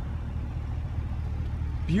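Steady low hum of a 2015 GMC Yukon Denali's V8 engine idling.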